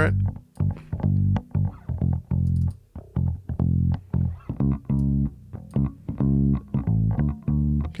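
Recorded bass guitar track playing a line of separate plucked notes, run through a Neve-style channel strip plugin with the preamp pushed, a low cut at 80 Hz, a few dB added at 700 Hz and 4:1 compression taking off about 5 dB.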